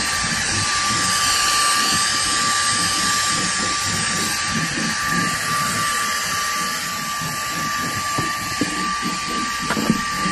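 Dyson cordless handheld vacuum running steadily with a crevice tool on car boot carpet: a constant high whine over a loud rushing hiss, with a few sharp knocks near the end.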